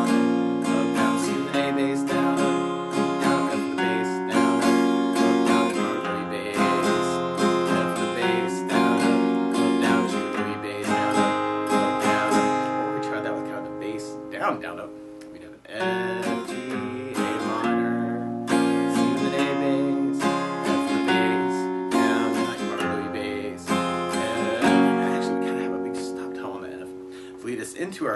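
Steel-string acoustic guitar with a capo on the first fret, strummed through the chorus chords in a pattern that strikes a single bass note before the down-up strums. About halfway through, the strumming breaks off and the last chord rings down for a moment, then the strumming resumes.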